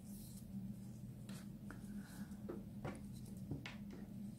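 Faint rustling and a few soft taps of hands handling a crocheted strip on a tabletop, over a steady low hum.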